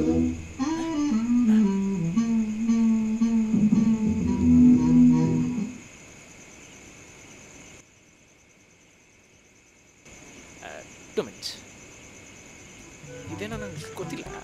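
A voice humming a tune in long held notes for about six seconds, then dropping away, over a steady high chirring that fits night insects.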